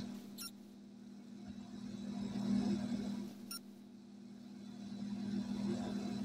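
A steady low mechanical hum, swelling slightly twice, with a few faint clicks.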